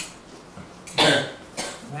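A man coughs once, sharply, about a second in, between phrases of his speech.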